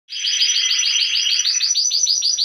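A Spanish Timbrado canary singing its cascabel tour: a loud, rapid run of evenly repeated notes, about seven a second.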